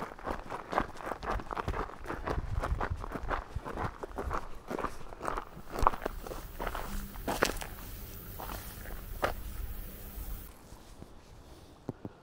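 Footsteps crunching on a gravel track at a steady walking pace. The steps stop near the end, leaving only a faint hiss.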